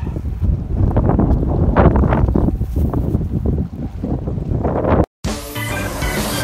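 Wind buffeting the microphone over choppy sea water, with the water sloshing in irregular surges. It cuts off suddenly about five seconds in and music starts.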